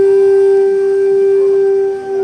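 A wind instrument holds one long steady note, dipping in level just at the end.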